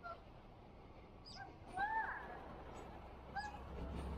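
A bird calling a few times: short pitched calls, the loudest a longer arched call about two seconds in. Underneath is a low traffic rumble that grows near the end.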